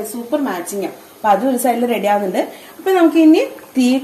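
A woman talking in continuous speech, with no other sound standing out.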